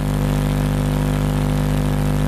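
A steady low hum made of several evenly spaced tones, holding level without a break.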